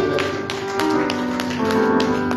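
Keyboard music holding long, steady chords, with sharp taps about three or four times a second over it.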